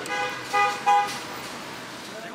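A vehicle horn tooting three short times in quick succession within the first second.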